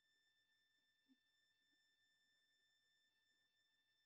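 Near silence, with only faint steady high-pitched tones in the background.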